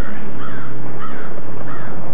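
Crows cawing: four harsh calls about half a second apart, over a low steady tone.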